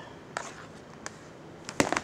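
Light handling noise around plastic storage bins of lace trims: a couple of faint clicks, then a quick cluster of sharper clicks and rustles near the end.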